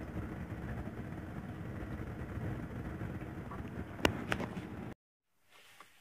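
Steady hum and rush of a running Lennox furnace's air handler, with two sharp clicks about four seconds in; the sound cuts off suddenly about a second later.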